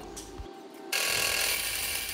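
Small steel-cutting bandsaw running, its blade cutting a sheet of 1084 carbon steel with a steady mechanical noise that starts abruptly about a second in.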